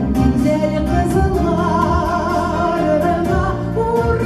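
Three women singing a Tatar pop song together into microphones, amplified through the hall's sound system, over a backing track with a steady beat.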